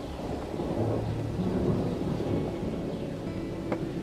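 A low rumble of distant thunder swells about a second in and slowly fades, under soft background music holding low notes.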